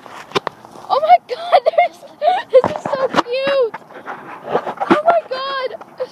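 Ducks quacking: a string of short calls, some drawn out and falling at the end, with sharp clicks and knocks among them.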